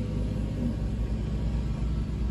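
Steady low rumble of an idling vehicle heard inside a Ford E250 van's cabin.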